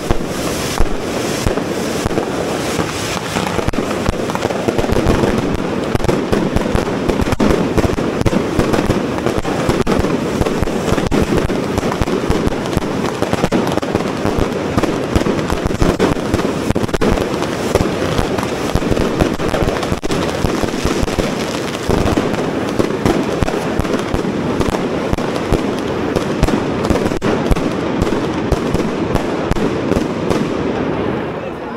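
Corrafoc pyrotechnic fountains spraying sparks, a dense, continuous crackling and hissing full of sharp cracks, thinning out near the end.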